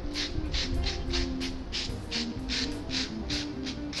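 Sandpaper rubbed in quick strokes along the edge of a wooden box lid, about three strokes a second, trimming off the overhanging decoupage napkin. Background music plays underneath.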